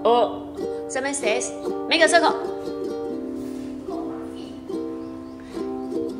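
Background music with steady held notes, and short bursts of voices over it in the first couple of seconds.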